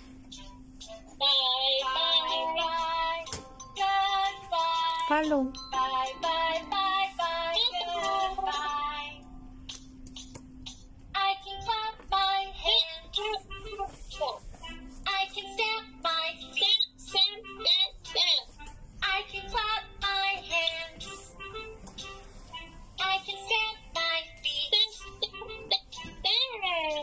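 A children's goodbye song playing from a tablet: sung phrases over a simple backing, with a short break about ten seconds in.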